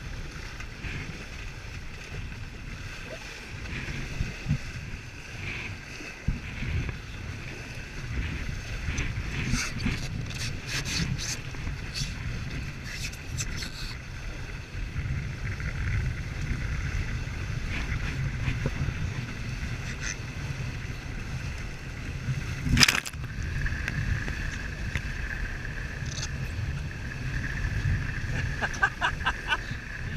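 Wind buffeting the microphone and water rushing along the hull of a Prindle 18-2 catamaran sailing fast through chop. Scattered clicks come through, and one sharp knock a little past two-thirds of the way through is the loudest sound.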